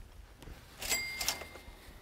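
A sharp clink about a second in, followed by a high, bell-like ring that fades out within a second.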